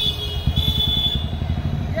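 Motorcycle engine running with dense low rumble as the bike rides along, heard from on the moving bike.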